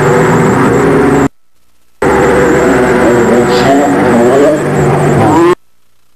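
Loud, distorted live noise music: a dense wall of droning, layered tones with a few gliding pitches. It cuts to silence abruptly about a second in, comes back less than a second later, and cuts out again near the end.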